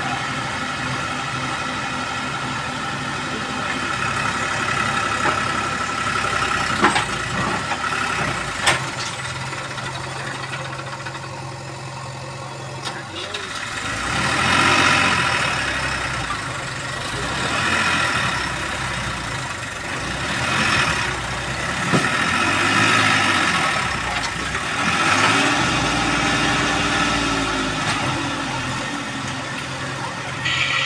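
Diesel engines of a Massey Ferguson 7250 tractor and a JCB backhoe loader running steadily. A couple of sharp knocks come early. In the second half the engine note swells and falls back every few seconds as the backhoe works.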